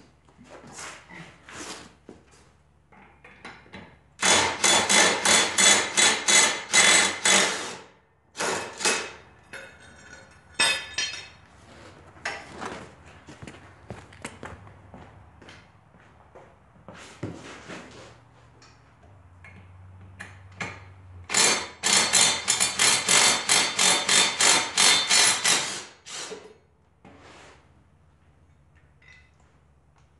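Ridgid 18-volt impact driver with a 15/16 socket hammering in two bursts of about four seconds each, breaking loose and spinning off zero-turn mower blade bolts. Metal clinks from the blades and bolts being handled fall between the bursts.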